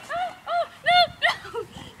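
A person laughing hard in a high voice: a run of about six short 'ha' sounds, each rising and falling in pitch, roughly three a second.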